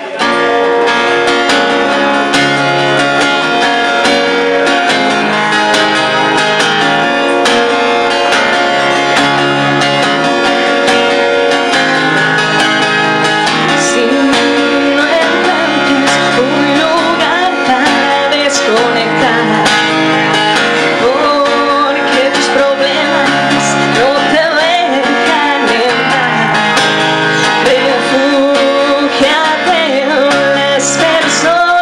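Acoustic guitar strummed in a steady rhythm through a repeating chord pattern, with a woman's singing voice coming in about halfway through.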